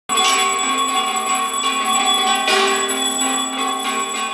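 Bells ringing continuously, several ringing tones overlapping as they are struck again and again.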